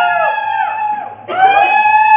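Conch shell blown in long, steady, high notes, each sliding up as it starts and dropping away as it ends; one note ends about a second in and the next begins a moment later.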